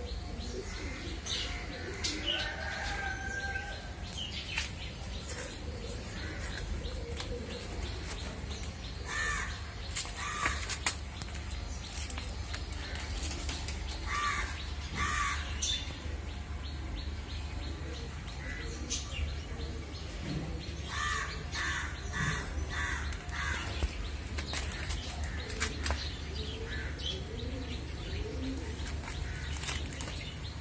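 Garden birds chirping, with crows cawing in short runs of repeated calls several times, over a steady low hum.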